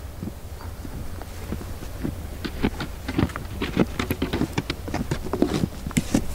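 Irregular small clicks and rustles of hands handling a bottom fishing line on a plastic winder board, pulling the worm off the hook; the clicks come thicker after about two seconds in, over a low steady rumble.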